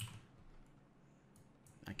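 Faint clicks from a computer keyboard and mouse: a last keystroke at the start, then a few quiet clicks about a second and a half in, with near quiet between.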